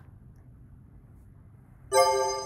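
Faint steady hiss, then just before the end a bright chime sounds suddenly and rings out with several tones, marking the start of the next quiz question.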